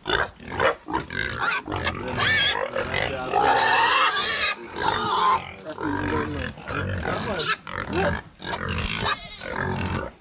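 Several pigs in a wooden pen squealing and grunting continuously, with high, wavering squeals loudest a few seconds in.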